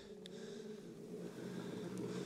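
Kärcher manual push sweeper rolling forward, its wheel-driven side brushes turning with a faint, steady whir that grows slightly louder.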